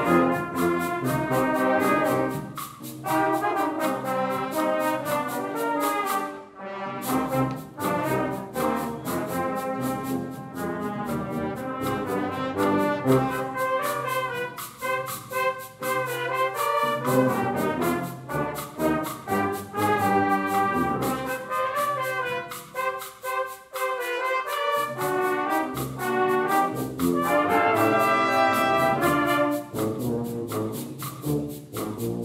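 Brass band of cornets, trombones and tubas playing a tango, with a short break in the sound about six and a half seconds in.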